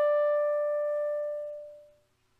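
A single held instrumental note at the end of a melodic phrase, fading steadily away to silence near the end.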